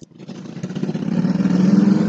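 A motor engine running, swelling over about a second and a half and fading soon after.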